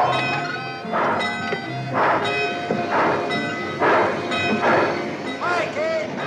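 Steam locomotive pulling away, its exhaust chuffing about once a second, with music playing underneath.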